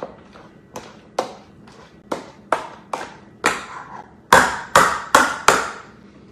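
Pampered Chef grid masher working cooked Hubbard squash into a puree in a metal bowl: a string of about ten sharp taps, roughly two a second, as the masher strikes through the squash to the bowl, the last four the loudest.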